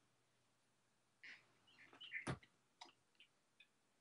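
Near silence broken by a few faint rustles and clicks as the thin pages of a Bible are leafed through, with one sharper click a little past halfway.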